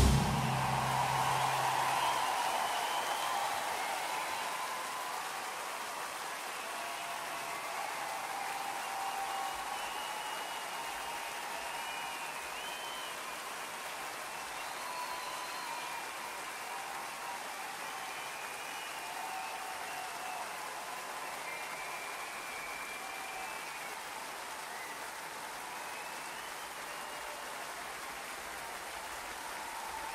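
Audience applauding, with a few whistles; the applause is loudest in the first couple of seconds, then eases to a steady level.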